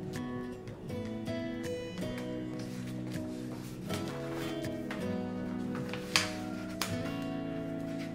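Background music of held, layered notes, with one short sharp click about six seconds in.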